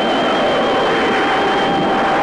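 Closing bars of a 1960s Tamil film song soundtrack: two high notes held steadily over a loud, even rushing hiss.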